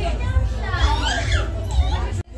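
Several high-pitched voices chattering and calling out over each other, over a steady low hum.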